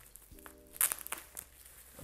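Bubble-wrap packaging being pulled and torn open, with a few sharp crackles and tears about a second in. Just before them there is a brief steady hum-like tone.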